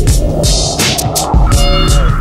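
Instrumental electronic hip-hop beat with heavy bass and drum hits, and a rising noise sweep through about the first second and a half.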